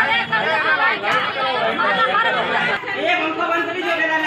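Speech only: several people talking over one another in a room, with overlapping voices and no pause.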